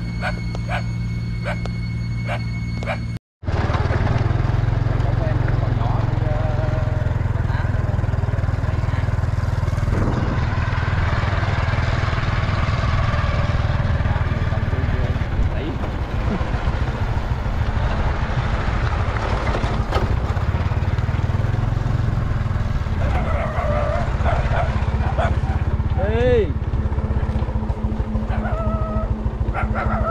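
Small motorbike engine running while riding along a dirt track, with wind on the microphone. The sound drops out for an instant about three seconds in and comes back louder.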